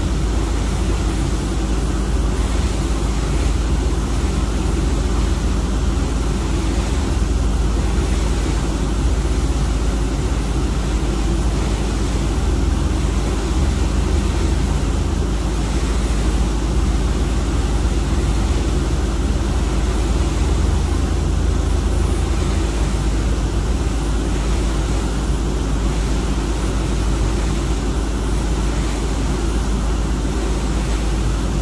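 Steady, loud rumble and rush of a ship underway with a pilot boat running alongside: engine drone mixed with churning water and wind.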